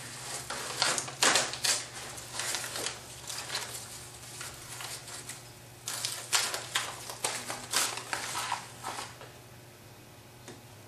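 Blue painter's tape with a paper pattern on it being peeled off a scroll-sawn wooden panel: irregular crackling and crinkling as the tape lifts and the paper tears. The tape has been on for a couple of days, so it comes off a little harder. It stops about nine seconds in.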